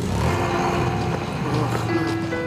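Cartoon sound effect of vehicle engines starting and pulling away: a low engine rumble that sets in suddenly, under background music.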